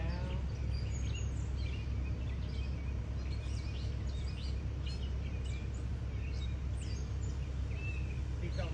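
Steady low rumble of an excavator's diesel engine running as it holds a fiberglass pool shell, with wild birds chirping and whistling in many short calls throughout.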